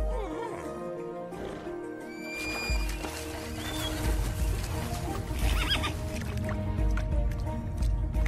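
Film score music with horses whinnying over it: one whinny at the start and another a little past the middle.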